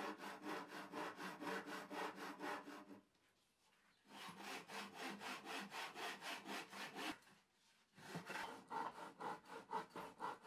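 Hand saw cutting through a wooden board in quick back-and-forth strokes, about five a second. The sawing comes in three runs, with short pauses about three seconds in and again about seven seconds in.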